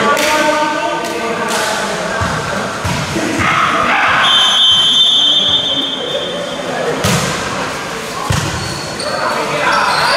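Volleyball being struck, sharp thuds of hand on ball, echoing in a large hall. A steady high whistle blast about four seconds in, a referee's whistle signalling the serve, is followed by a quick run of ball strikes as the rally starts. Players and spectators shout throughout.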